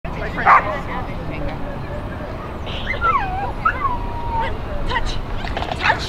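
A dog barking and whining: one loud bark about half a second in, a whine that glides up and down in pitch in the middle, and a few short sharp barks near the end, with voices in the background.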